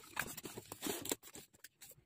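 Corrugated cardboard box being handled and slid open: faint scraping and rustling of the cardboard, dying away about a second in.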